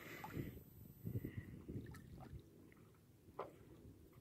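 Faint water lapping and splashing against a paddleboard in irregular soft bursts, over a low rumble.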